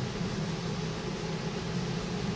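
Steady low hum with hiss: the background noise of a large room, with no distinct event.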